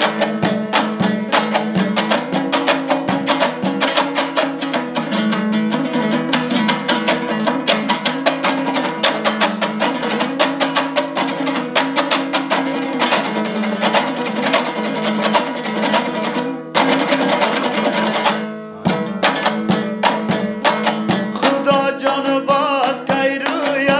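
Hazaragi folk music on a dambura, the two-stringed Afghan long-necked lute, strummed in a fast, even, driving rhythm in an instrumental passage between sung verses. Singing comes back in at the very end.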